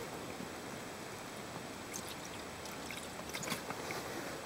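Gasoline poured from a plastic bottle, trickling steadily and softly down the carburetor of a Ford 300 inline-six. The engine is being primed by hand for a cold start, to make up for its weak accelerator pump.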